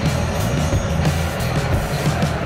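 Music played over a stadium public-address system, steady and heavy in the bass.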